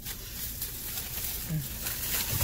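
Thin plastic shopping bag rustling and crinkling as it is handled and lifted.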